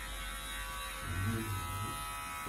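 Electric hair clippers running with a steady buzz while shaving a head.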